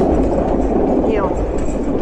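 Steady rumble and rattle of a White Pass railway excursion car rolling along the track, heard from its open outdoor platform. A woman's voice says a couple of words about a second in.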